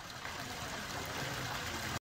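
Small fountain jets splashing steadily into a shallow pool.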